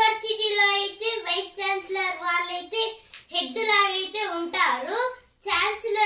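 A young boy's voice singing or chanting in a sing-song melody with long held notes, broken by short pauses for breath about halfway through and near the end.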